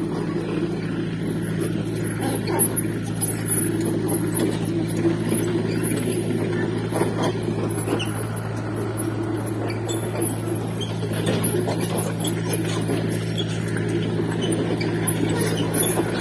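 Kobelco mini excavator's diesel engine running at a steady, even hum, with scattered faint clicks and knocks over it.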